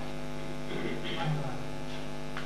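Steady electrical mains hum from the microphone and sound system, with a faint low vocal sound about a second in.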